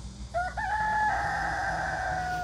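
A rooster crowing: one long crow that starts about a third of a second in and holds a steady pitch.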